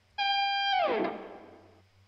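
Distorted electric lead guitar with a Mesa V-Twin amp tone, played back in the mix through an extreme high-cut EQ. It holds one high note for about half a second, then slides down in pitch and fades.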